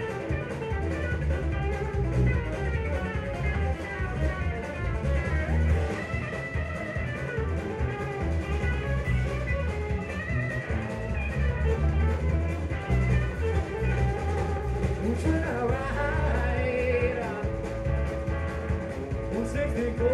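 Live blues-rock band playing: electric guitars over drum kit and bass, with pitch-bent guitar lines near the end.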